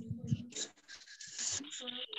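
Pencil writing on paper, a scratchy rustle heard over a video call, with faint voices in the background.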